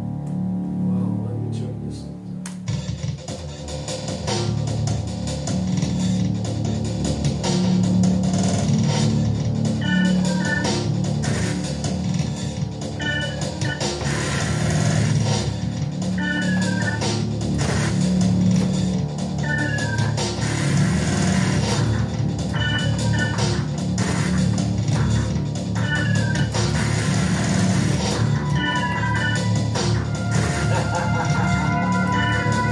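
An original electronic composition played live on a custom three-manual MIDI keyboard with pedalboard, with organ-like synth sounds over a pulsing bass. It grows louder over the first several seconds, and from about ten seconds in a short high figure comes back about every three seconds.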